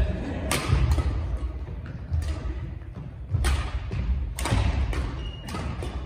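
Badminton rackets striking shuttlecocks in an attacking drill: sharp smacks every second or so, each with a short echo, over heavy thuds of feet landing on the wooden court floor.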